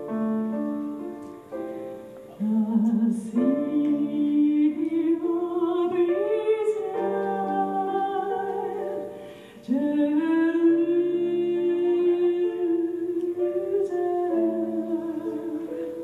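A woman singing a slow gospel song into a microphone over piano accompaniment. The voice comes in a couple of seconds in, drops out briefly near the middle, then returns with a long held note.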